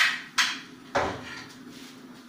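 Steel kitchen vessels knocking together as they are handled: three sharp clanks about half a second apart, each ringing briefly, the first the loudest.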